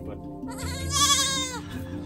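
A young goat bleating once: a single wavering call lasting about a second.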